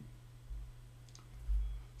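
A faint single click about a second in, over a steady low hum, with a couple of soft low thumps.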